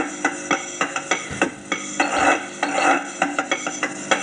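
A soundtrack of rhythmic, metallic clinking percussion, about three to four strikes a second, over sustained musical tones.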